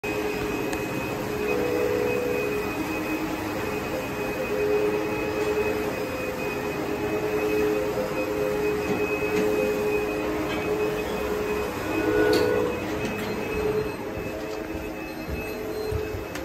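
Schindler 321A holeless hydraulic elevator running as the car arrives at the landing: a steady mechanical hum with a thin whine. A short rattle comes about twelve seconds in as the doors open.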